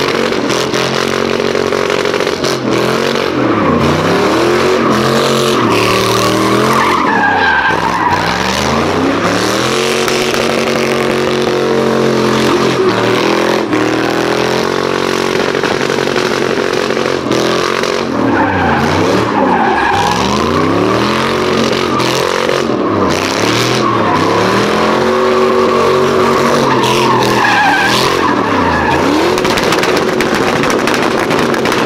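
Square-body Chevrolet pickup doing smoky donuts: its engine revs rise and fall over and over while the rear tyres squeal and skid on the asphalt.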